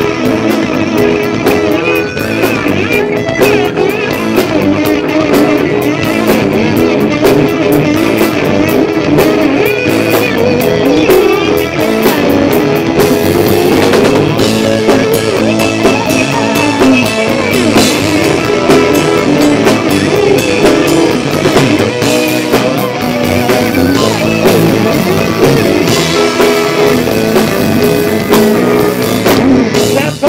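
Live blues-rock band playing an instrumental passage: electric guitar, bass guitar and drum kit, loud and continuous.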